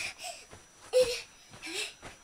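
A young child's short vocal sounds while jumping on a bed, with a sharp thump and rustle of bedding about a second in as he lands, and a brief rising voiced sound near the end.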